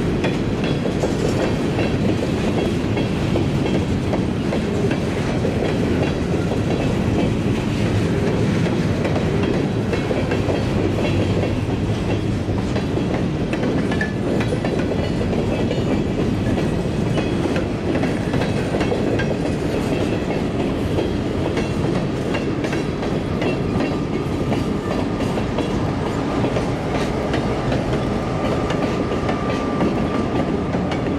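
Freight train cars rolling past close by: steady wheel-on-rail rumble and clickety-clack of the trucks over the rail joints. A faint thin steady squeal joins in over the last several seconds.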